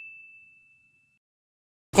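The fading tail of a single high, bell-like ding sound effect, dying away about a second in and followed by dead silence. A voice cuts in right at the end.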